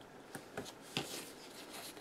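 Small clicks of metal tweezers on a paper planner page as a number sticker is placed and pressed down: three clicks in the first second, the loudest about a second in, then a light rustle of paper.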